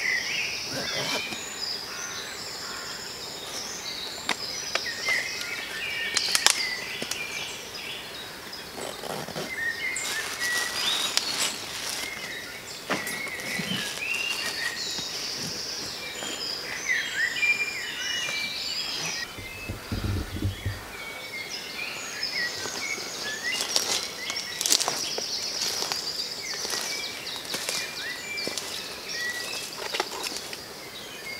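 Several woodland birds singing and calling, many short chirps and whistled phrases overlapping throughout. A brief low rumble comes about twenty seconds in.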